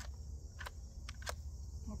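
Three short clicks, the last two close together, from the action of a Rossi RS22 .22LR semi-automatic rifle being worked by hand to clear a failure to feed. Insects chirp steadily behind.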